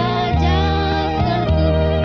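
Recorded Malayalam Kingdom song (a Jehovah's Witnesses hymn): a sustained melody over held bass notes that change every half second or so.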